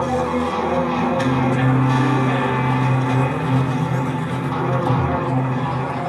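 Live band music without singing: electric guitar over held low bass notes in a dense, loud, continuous mix.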